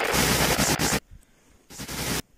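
Edited-in intro sound effect: a loud, dense crackling noise that cuts off suddenly about a second in, then a short noisy burst near the end, in the manner of a glitch transition.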